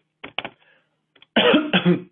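A couple of short clicks, then from about a second and a half in a man coughs loudly, lasting about half a second.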